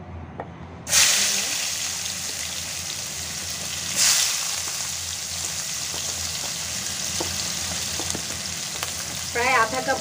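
Sliced onion dropped into hot oil in a non-stick pan, starting a loud sizzle about a second in. A second surge about four seconds in, then steady frying.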